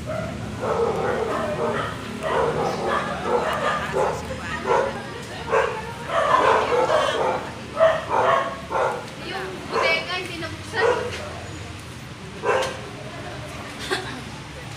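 A dog barking repeatedly, many short barks in a row, with people talking.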